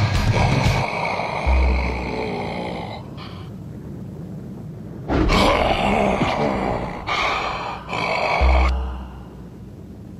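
Cartoon monster growling and roaring sound effects over dramatic background music, in rough bursts with a quieter lull in the middle. Two deep booms land about a second and a half in and near the end.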